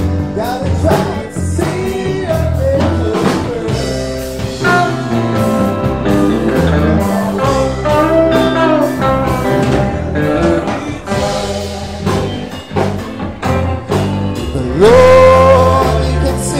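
Live rock band playing: electric guitar, keyboards and bass with sung vocals over a steady beat. Near the end a loud held note slides up in pitch.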